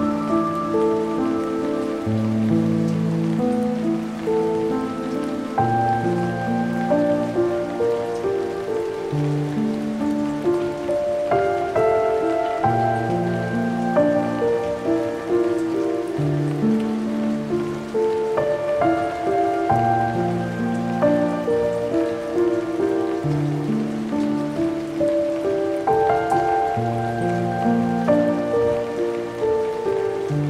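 Slow, melancholic piano music, chords changing every second or two, layered over the steady hiss of falling rain.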